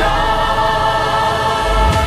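Background music: voices of a choir holding one sustained chord.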